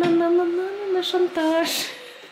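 A girl singing a melody in long held notes, in two or three phrases with short breaks.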